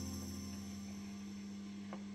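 A steady low hum, with the last of an acoustic guitar chord dying away at the start and a faint click near the end.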